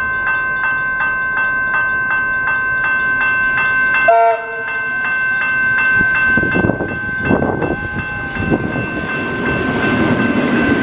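Tait 'Red Rattler' electric suburban train approaching and passing close by, with a short toot of its horn, dropping in pitch, about four seconds in. From about six seconds the running noise of its wheels and bogies on the track grows as the carriages go past, over a steady high ringing that pulses about three times a second at first.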